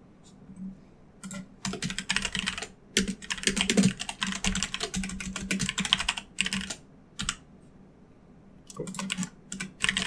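Computer keyboard typing in quick runs of key clicks, starting about a second in. The clicks pause for about a second and a half, then resume near the end.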